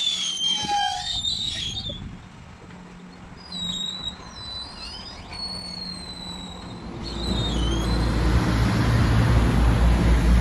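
Rear-loader garbage truck's compactor squealing in high, wavering tones, in two spells over the first six seconds. About seven seconds in, a louder low rumble of a truck engine and street traffic takes over.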